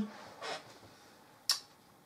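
A pause in a man's speech: his spoken "eh?" trails off at the very start, followed by a faint short vocal sound and a single brief click about one and a half seconds in.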